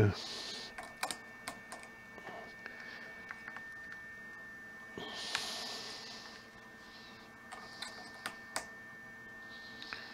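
Clicks and clatter of battery-tester alligator clamps being handled and clipped onto 12-volt battery terminals, in scattered sharp clicks with soft rustling. A faint steady high tone sounds throughout.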